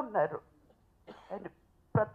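A woman gives a single short cough into a handheld microphone about a second in, in a pause between her words.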